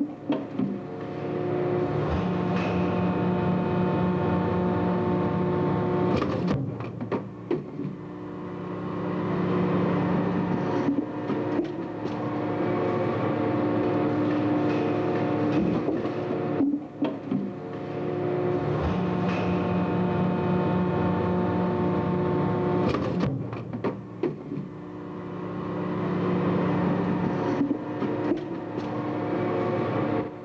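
Schwabe DG75 straight-ram hydraulic platen press running, its hydraulic unit giving a steady multi-tone hum that loads up and eases off in a cycle repeating about every 16 seconds as the ram strokes. Short knocks mark the changes between stages of each cycle.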